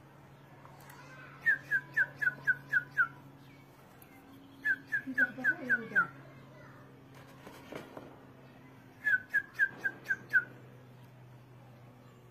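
A bird whistling a run of six or seven quick, slightly falling notes, about four or five a second. The run comes three times: early on, about halfway through and near the end. A steady low hum lies under it.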